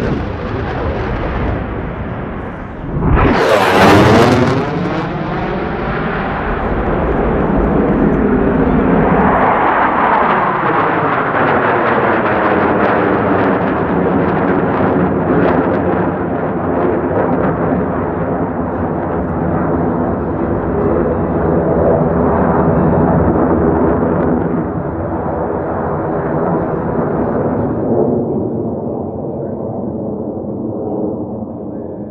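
US Navy Blue Angels F/A-18 Super Hornet jets. One passes low and fast about three to four seconds in, loudest there, its pitch sliding down as it goes by. A sustained jet-engine roar follows as the jets climb and fly in formation, easing off near the end.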